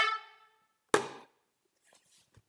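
The last note of a handheld toy horn fading out, followed about a second in by a single sharp knock, then near silence.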